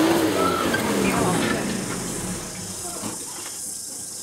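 Pickup truck engine revving up and easing off as the truck pulls a palm tree out of the ground with a tow strap. The revs rise and fall over about two seconds, then the sound drops away.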